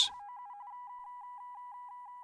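Electronic beeping: a rapid run of short beeps, about six a second, over a steady higher tone, like a computer or data read-out sound effect.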